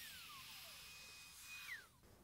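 Faint whine of a SKIL plunge router's motor and spiral upcut bit coasting down after switch-off, falling steadily in pitch, with a second higher tone that drops away sharply near the end.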